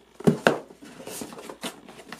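Cardboard box being handled by hand: a few light knocks and taps, the two loudest close together near the start, with soft rustling between.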